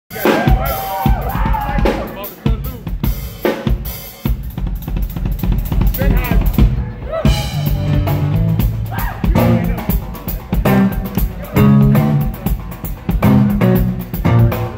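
Live drum kit playing a busy groove of rapid snare, kick and cymbal strokes, with electric bass guitar notes coming in about halfway through.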